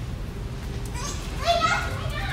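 A young child's high-pitched voice calls out from about a second in, over a steady low rumble inside the ship.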